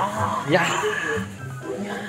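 Young men's voices talking and exclaiming over background music.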